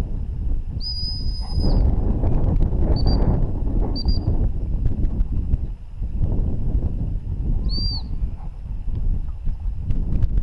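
A high dog-training whistle blown by a gundog handler: one long blast about a second in, two short pips a second apart, then a short pip that rises and falls near the end. Wind rumbles on the microphone underneath.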